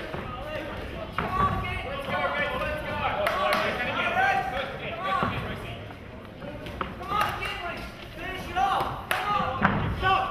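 Several voices shouting and calling out around a boxing ring, over scattered sharp thuds from the boxers: gloves landing and feet on the ring canvas.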